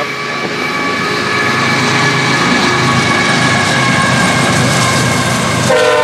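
Florida East Coast GE ES44C4 diesel locomotives approaching with the lead unit's air horn sounding one long, steady chord over a growing engine rumble and wheel noise. Near the end the lead locomotive draws level and the horn drops to a lower, louder chord.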